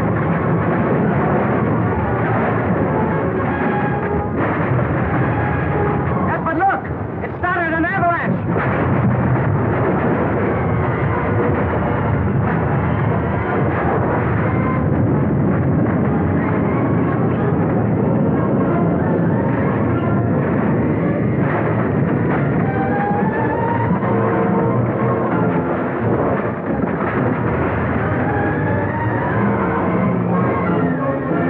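Dramatic orchestral score over a continuous low rumble of a snow and rock avalanche, set off by a bomb dropped on the mountain.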